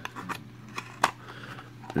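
Small cardboard toy-car box being handled and its end flap pushed shut: a few soft papery clicks and scrapes, the sharpest about a second in.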